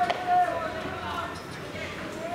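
People's voices talking, with one sharp click just after the start.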